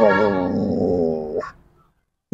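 Black Labrador giving one long, wavering, drawn-out vocal moan rather than a sharp bark, ending about a second and a half in. It is the dog's answer to a hand cue to speak.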